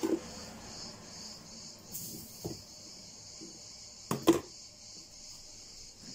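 Kitchen handling noises of a plastic sugar container and a spoon over a steady faint hiss: a few soft clinks and rustles, then a sharp double knock about four seconds in as the container is set down on the counter.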